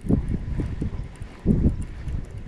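Wind buffeting the microphone in irregular low rumbling gusts, strongest about a second and a half in.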